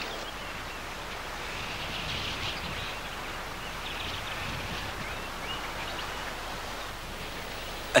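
Steady outdoor background hiss from an old film soundtrack, with a few faint, high bird chirps about two and four seconds in.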